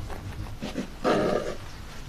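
A short animal call about a second in, lasting about half a second.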